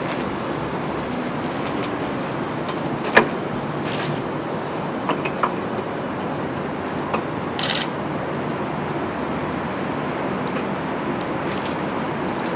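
Nitrogen tetroxide being released through the valve of a small pressurised cylinder into a chilled glass measuring cylinder, where it condenses. The sound is a steady low rush with a few light clicks and one short hiss a little past the middle.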